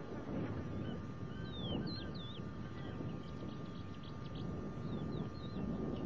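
Small birds chirping and whistling over a steady low outdoor rumble, with quick curling whistles and short chirps scattered through.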